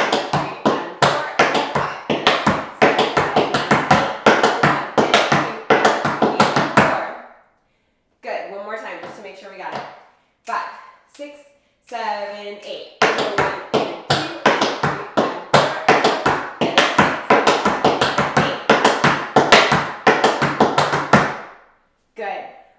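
Tap shoes striking a wooden tap board in fast, rhythmic runs of riffs, spank-crosses and heel-heel-toe-toe rhythm turns. There are two dense passages of taps with a break of a few seconds in the middle.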